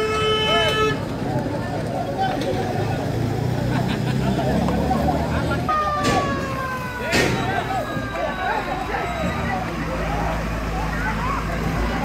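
Crowd voices and running vehicle engines on a road at night. A vehicle horn holds a steady note for the first second, and about halfway through a high horn-like tone slides slowly down in pitch for several seconds, with two sharp clicks as it begins.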